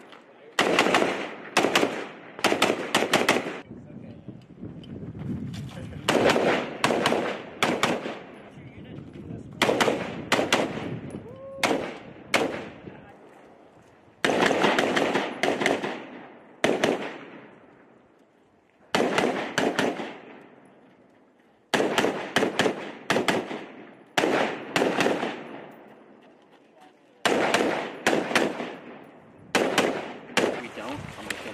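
Rifle fire in quick strings of several shots, each string followed by a pause of a second or two before the next, with an echo trailing each shot.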